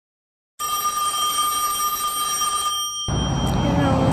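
Telephone sound effect: a steady electronic telephone tone that starts about half a second in and stops abruptly about three seconds in. It is followed by outdoor background noise.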